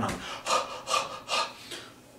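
A man panting in short, rapid breaths, about five in a row at roughly three a second, acting out waking startled from a dream.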